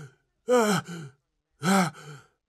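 A man's voice letting out two short, panicked gasping sighs, each rising and then falling in pitch.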